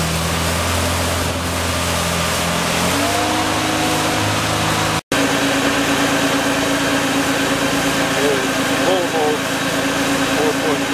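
Volvo Penta 4.3 GXi V6 sterndrive running under way with water rushing past the hull; about three seconds in, the engine note rises. After a sudden cut, the same engine is idling steadily, heard close up in its open engine compartment.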